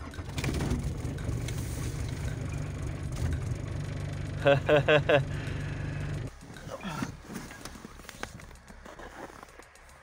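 Cold start of a 30-year-old diesel car engine that has stood unused for a year: the engine is cranked and run, a steady low pulsing rumble for about six seconds, which then cuts off abruptly. A brief voice is heard about four and a half seconds in.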